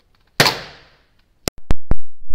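Hammer blows on a 2.5-inch laptop hard drive, struck to break its thin platters: one sharp hit with a ringing decay, then a quick run of four more hits near the end.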